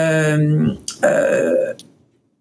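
A woman's voice drawing out a long hesitant "euh" at one steady pitch, then, about a second in, a shorter, rougher vocal sound before falling silent.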